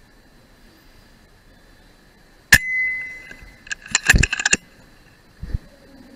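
A single shot from a .177 FX Dreamline PCP air rifle: a sharp crack about two and a half seconds in, with a ringing tone fading over about a second after it. About a second later comes a quick run of metallic clicks and clunks, then a low bump near the end.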